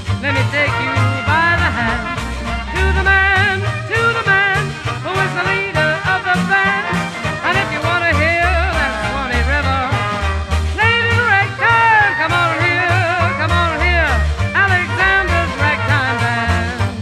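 Traditional New Orleans-style jazz band playing in swing time, with pitch-bending lead lines over a steady bass beat.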